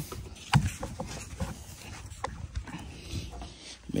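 Hard tri-fold tonneau cover being pressed down onto the truck bed rail: one sharp snap about half a second in as a panel latches, then a few lighter clicks and knocks.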